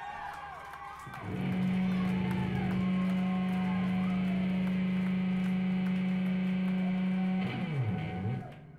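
Electric guitar and bass guitar played loosely through amplifiers, without drums. About a second in, one low note is held and rings steadily for about six seconds. Near the end it gives way to quick pitch swoops down and back up.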